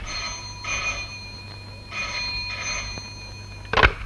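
Telephone bell ringing in the double-ring pattern: two short rings, a pause, then two more. A sharp knock comes near the end.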